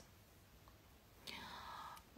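Near silence, then a little over a second in a faint breathy hiss lasting under a second: a woman's in-breath just before she speaks again.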